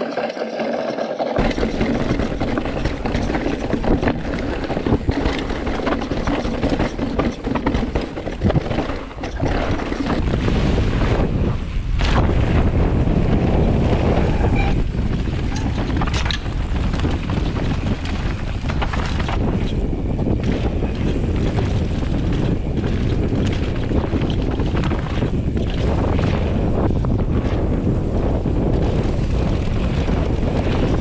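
Mountain bike ridden fast down a dirt trail, heard through a GoPro: wind rushes over the microphone while the tyres roll on the dirt and the bike rattles, with many sharp knocks over bumps. From about ten seconds in, the noise becomes a denser, steadier rumble.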